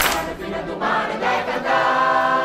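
Mixed folk choir of men and women singing a traditional song together. The voices settle into a long held chord near the end.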